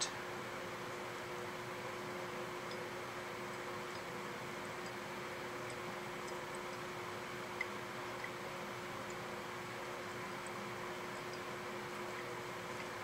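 Steady room tone: a low, even hum and hiss, with two faint ticks partway through.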